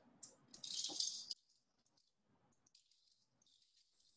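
Climbing hardware being rummaged through by hand on a workbench: a brief rattle lasting about a second.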